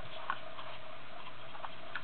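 Steady room hum and hiss with a few faint, light clicks scattered through it.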